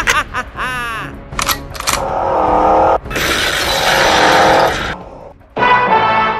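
Laughter trails off at the start, then a loud rushing, crash-like sound effect with shattering plays over music: a Batmobile arriving.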